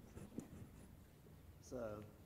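Quiet room with a few faint taps and rustles of something being handled at a pulpit, including one sharper knock just under half a second in. Near the end a man says "So."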